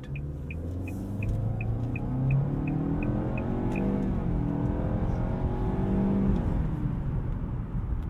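2024 Nissan Altima's 2.5-litre naturally aspirated four-cylinder pulling hard under acceleration through its CVT, heard inside the cabin, the engine note climbing and swelling before easing off near the end. The turn-signal clicker ticks about three times a second for roughly the first half, then stops.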